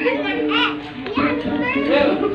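Several people's voices chattering and calling out, with background music underneath.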